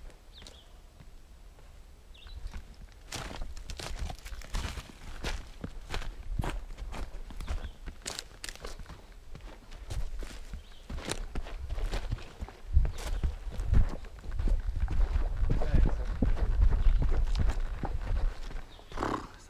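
Footsteps on dry dirt, twigs and rock, starting about three seconds in as irregular scuffs and crunches, then growing heavier and more frequent near the end.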